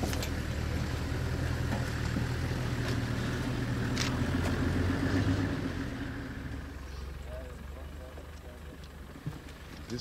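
Safari vehicle's engine idling with a steady low hum, fading away about six to seven seconds in. There is a single click about four seconds in.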